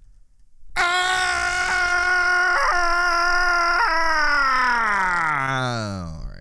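A man's voice holds one long loud note from about a second in, broken briefly twice, then slides steadily down in pitch to a low groan near the end.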